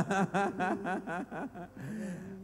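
A man laughing into a microphone in a quick run of short bursts, about five a second, tailing off after about a second.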